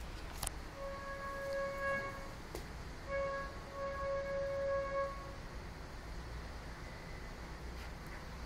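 A plush toy's squeaker giving two long, steady squeals, the first about a second and a half and the second about two seconds, as a Pembroke Welsh Corgi puppy bites down on it.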